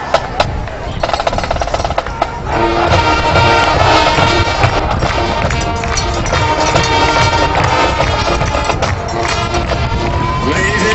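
High school marching band playing on the field: drum strokes carry the first couple of seconds, then the full brass and woodwind band comes in louder about two and a half seconds in and holds sustained chords.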